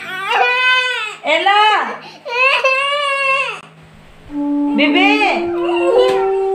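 A toddler's long, high-pitched vocal cries, three in a row. From about four seconds in, a few steady held musical notes step up in pitch.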